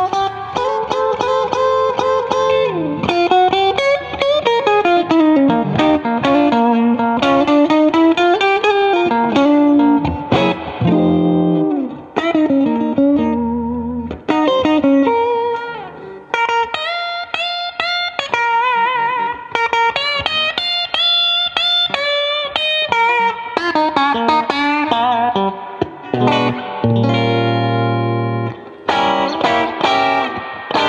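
Electric guitar playing single-note lead lines, with string bends and vibrato. A low note or chord rings on for about a second near the end.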